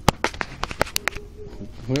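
Handling noise: a quick run of about eight sharp clicks and knocks in the first second, the first the loudest, as the camera and the banjo are moved about, then quieter until a man's voice comes in at the very end.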